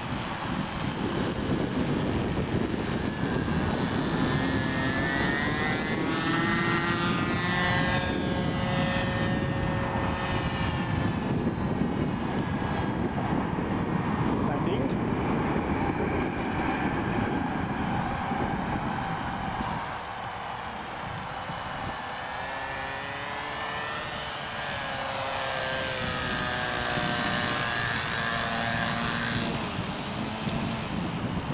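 Radio-controlled model autogyro flying, its motor and propeller giving a whine that slides up and down in pitch as it passes and changes throttle. Heavy wind noise on the microphone runs underneath and eases for a while past the middle.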